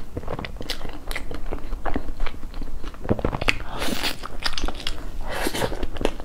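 Close-miked mouth sounds of eating a spoonful of cake: a run of quick wet clicks and crunches as it is bitten and chewed. There are two longer noisy bursts, about four and five and a half seconds in.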